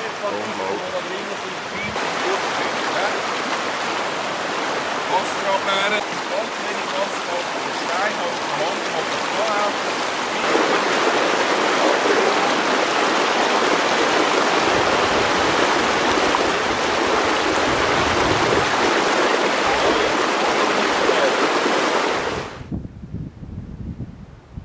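Fast mountain stream rushing over stones, a steady, loud wash of water that grows louder about halfway through, with faint voices under it in the first half. The water sound cuts off shortly before the end.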